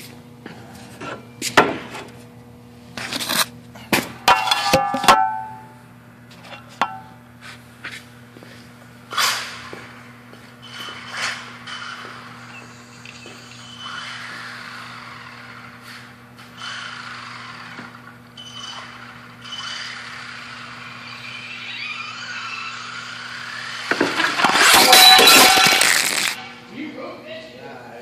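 A radio-controlled car whines, its pitch shifting as it drives along a drywall sheet. About twenty-four seconds in it crashes loudly into a cellphone, with two seconds of clattering. Earlier there is a run of sharp knocks and clicks in the first few seconds.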